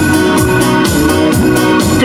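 Live instrumental dance-band music with sustained keyboard chords over a steady beat, played through PA speakers, with no singing.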